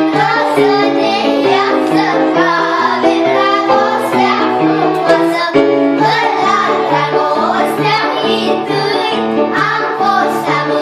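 A group of young children singing a song together, over an instrumental accompaniment of low held notes that move step by step.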